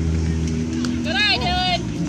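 A high-pitched shout from a spectator about a second in: a short rising-and-falling call, then a held note. Under it runs a steady low hum.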